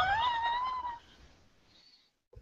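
A single high, drawn-out cry that rises in pitch and then holds for about a second before stopping; after it the sound drops to near silence.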